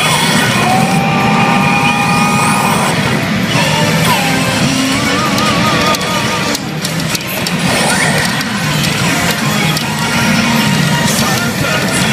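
Hana no Keiji pachinko machine playing its loud music and electronic sound effects while the kanji reels spin on its screen.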